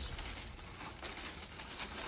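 Faint rustling of a small printed paper gift bag being handled and opened, with a few light ticks.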